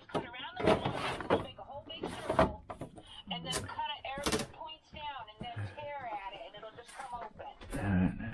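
Items knocking and clattering as a gloved hand rummages through the shelves and drawers of an old refrigerator used for storage, with the refrigerator door being handled. Irregular sharp knocks, a few louder than the rest.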